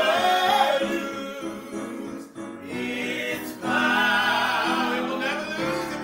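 A man and a woman singing a gospel praise-and-worship song, holding long notes.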